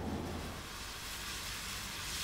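Steady hiss of tyres on a wet road, with a low road rumble underneath.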